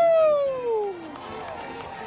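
A single voice holds one long, loud call that slowly slides down in pitch and fades out about a second in, leaving a low background murmur.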